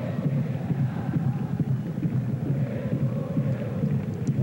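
Football crowd in the stands drumming a fast, steady beat and chanting along.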